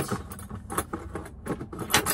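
Metal cutlery clinking and rattling as it is rummaged through, an irregular string of light clinks.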